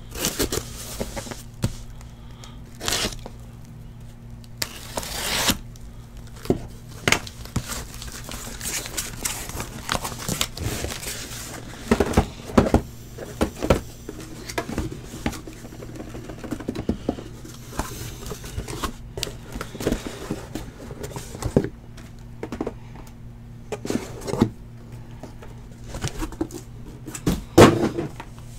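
Cardboard boxes being handled and their packaging torn open: irregular tearing, crinkling and rustling of wrap and tape, with light knocks of cardboard on the table.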